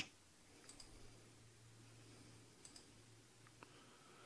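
Near silence with a few faint, short computer clicks, some in quick pairs, as the video player is stepped back through the footage.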